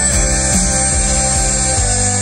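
Live rock band playing an instrumental passage with electric guitar, bass and drums, heard from the audience; just before the end the moving bass line gives way to a steady held chord.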